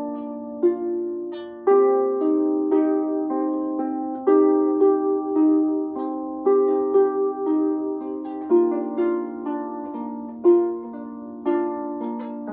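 A Stoney End Ena double-strung lever harp played solo, improvising: single plucked notes about every half second, with fuller chords struck about every two seconds, each ringing on and overlapping the next.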